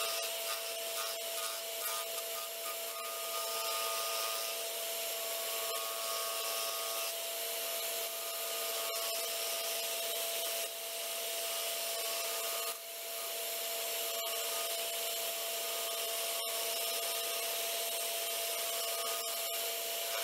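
Wood lathe spinning an olivewood blank while a gouge cuts it, truing it up round: a steady hiss of the cut over a steady whine. The cutting noise dips briefly twice near the middle.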